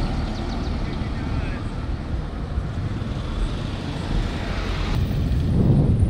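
Road traffic going by with a low wind rumble on the microphone; a vehicle passing grows louder through the second half.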